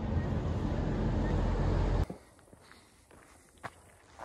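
Outdoor roadside ambience with a heavy low rumble that cuts off abruptly about halfway through. A much quieter stretch follows, with a few faint clicks.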